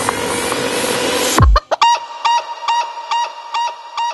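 Psytrance track: the kick drum and bassline cut out about a second and a half in, leaving a breakdown of sampled chicken clucks repeating about three or four times a second over a steady tone.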